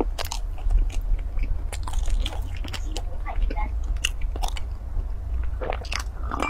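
Close-miked eating of a mooncake pastry: bites and chewing with many short mouth clicks and crackles, over a steady low hum.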